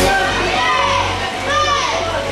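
Children's voices calling out in an indoor swimming pool hall, a couple of drawn-out shouts rising and falling in pitch, over quieter background music.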